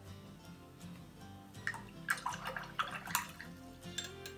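A paintbrush being swished and rinsed in a jar of water, with small splashes and drips starting about halfway through, over soft background guitar music.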